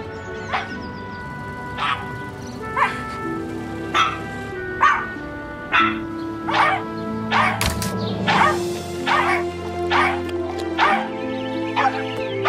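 Puppies barking one at a time in a slow, building rhythm, like a slow clap. The barks start about a second apart and come faster, nearly two a second by the end, over music that rises in pitch underneath.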